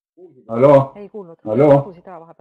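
Only speech: a man's voice over a webinar audio link, with two loud syllables about half a second and a second and a half in and quieter broken fragments between them.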